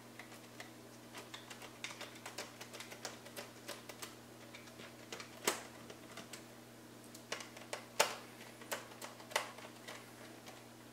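Small screwdriver turning a screw into a 3D-printed plastic mount, with parts being handled: irregular light clicks and taps, and a few sharper clicks about halfway through and near the end.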